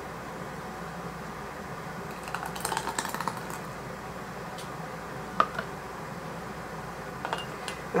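Kitchenware clatter as hot jam is ladled through a plastic canning funnel into glass half-pint jars: a cluster of light clinks and scrapes about two and a half to three and a half seconds in, and one sharp clink about five seconds in. A low, steady room hum runs under it.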